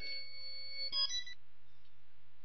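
Electronic ringtone-type tones: several high pitches held together, shifting about a second in and cutting off shortly after. A low steady hum runs underneath.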